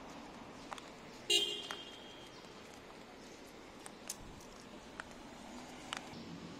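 Steady outdoor background on a footpath with a few light clicks spread through, and one brief, loud higher-pitched tone about a second and a half in.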